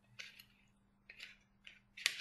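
Near silence with a steady low hum, broken by a few faint, short scratchy noises, two close together near the start and two more in the second half.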